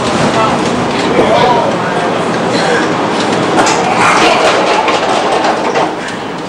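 Chicago L rapid transit train running, heard from inside the car: a steady rumble of wheels on rail with clicks over the rail joints.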